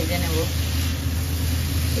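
Cauliflower florets frying in a non-stick pan: an even hiss over a steady low hum, with a voice briefly in the first half-second.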